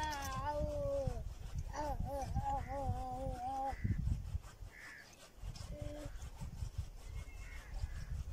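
An animal calling in long, drawn-out cries with a wavering pitch: one fading out about a second in, a longer one from about two to four seconds, and a short call near six seconds, over a low rumble.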